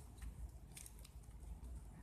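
Faint crinkling and ticking of a shiny ribbon flower being handled and adjusted in the fingers, with a few short sharp clicks scattered through.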